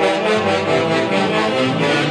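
Loud live band music for the Chonguinos dance, with several sustained notes held and changing together in a steady flow.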